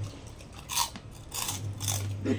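Crisp crunching of a bite of crispy pork crackling being chewed with the mouth close to the microphone: three crunches roughly half a second apart.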